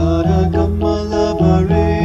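Devotional music played on keyboard, with sustained notes changing every fraction of a second over a held bass line.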